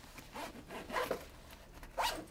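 A fabric backpack's zipper being pulled open in a few short rasps.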